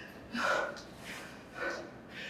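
A man breathing hard, winded after a heavy set of Romanian deadlifts: two heavy gasping breaths, about half a second in and again near the end.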